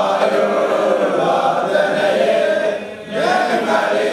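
Many voices chanting a liturgical hymn together in long held phrases, with a brief break about three seconds in before the next phrase starts.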